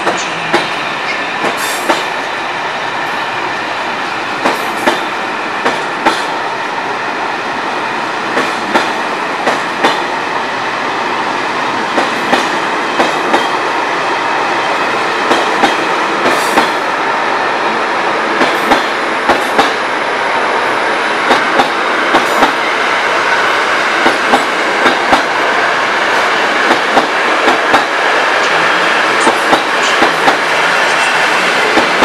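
Coaches of a TLK passenger train rolling past, the wheels clicking over rail joints under a steady rumble. The clicks come more often toward the end as the sound grows louder.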